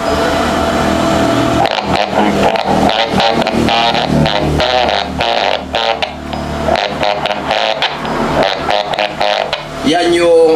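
Icom IC-28H's transmitted audio received through the speaker of an Icom handheld radio, coming out harsh, garbled and distorted rather than clean. It is the sign of a fault in the transmit audio preamp stage, which the technician suspects lies in the 4558 op-amp IC or its audio filter capacitor.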